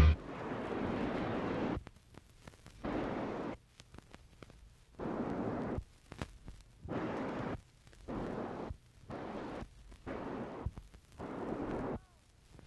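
A very high 15,000-cycle test tone from a stereo test record, coming and going in short pulses, over faint bursts of rushing noise with short gaps between them.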